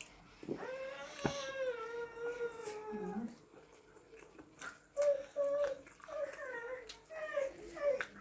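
A cat meowing: one long, drawn-out meow starting about half a second in and lasting over two seconds, then a run of shorter meows in the second half.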